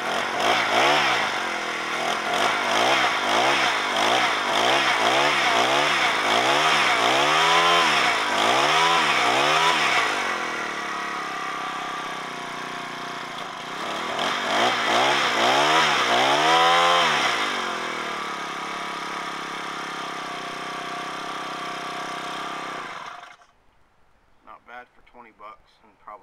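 Honda GX31 31cc four-stroke mini engine, running off the bare flywheel with its clutch removed, blipped up and down about once a second for the first ten seconds, then settling to a steady idle. A second short burst of three quick revs comes in the middle, it idles again, and it is shut off about a second before the end. It revs and idles cleanly after fresh fuel lines, a new fuel filter and a valve adjustment.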